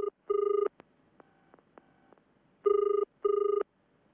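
Telephone ringing in the British double-ring pattern: two short rings, a pause of about two seconds, then two more short rings.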